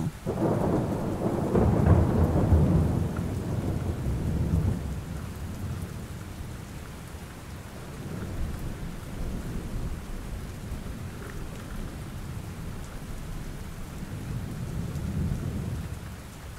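Steady rain with a roll of thunder that swells right at the start, rumbles for about five seconds and fades. A fainter rumble builds near the end.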